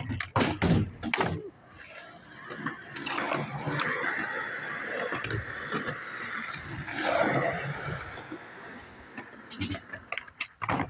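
Skateboard clacking and slapping on concrete in a quick run of sharp hits during the first second and a half. This is followed by several seconds of skateboard wheels rolling on concrete, loudest about seven seconds in.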